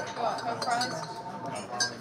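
Crockery and glassware clinking against a background of voices, with a few short, sharp ringing clinks near the end.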